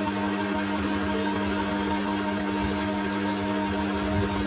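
Philips masticating slow juicer running, its motor giving a steady, even hum.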